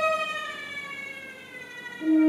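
A bowed violin note sliding slowly downward in pitch and fading out, a glissando played in an ensemble piece.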